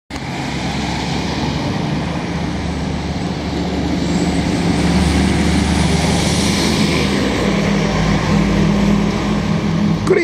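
Street traffic: a pickup truck and then a city bus drive past close by, with steady engine tones and tyre noise. It gets louder from about the middle as the bus passes.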